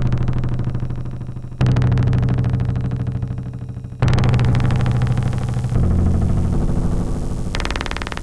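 Electronic percussion performance: strikes on an acoustic drum set off loud synthesized low tones. A new tone starts abruptly about every two seconds, four times, and each fades before the next.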